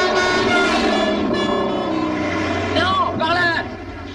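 Many car horns honking at once from a queue of stopped cars, several held tones overlapping. A man's shout breaks in about three seconds in.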